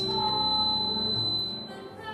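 A woman singing a solo show tune with instrumental accompaniment, holding a note through the middle. A thin, steady, high tone runs underneath and cuts off shortly before the end, when the music also gets quieter.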